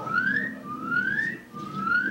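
Rising whistled notes, each sliding up in pitch for about half a second, repeated three times in a row: a frog-like whistle given as a demonstration for the audience to copy.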